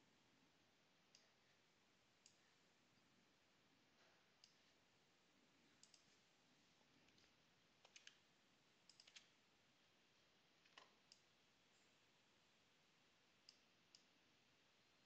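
Faint, scattered computer mouse clicks, a dozen or so spread irregularly with a few in quick pairs, over near silence.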